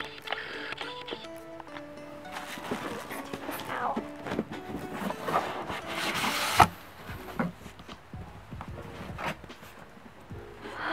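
Soft background music of held, stepping notes, with rustling and scraping of a cardboard shipping carton and its bubble-wrap packing as a boxed doll is worked out of it. The loudest rustle, about six and a half seconds in, cuts off suddenly.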